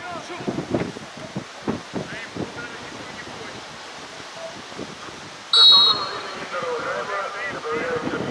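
A referee's whistle gives one short, sharp blast about five and a half seconds in, for a free kick to be taken; it is the loudest sound here. Players' shouts and calls come from across the pitch before and after it.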